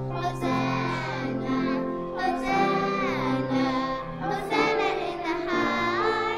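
A children's choir singing a song over steady instrumental accompaniment with long held low notes.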